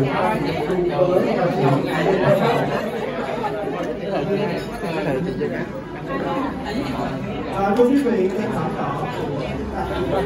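Indistinct chatter of several people talking at once, echoing in a large hall.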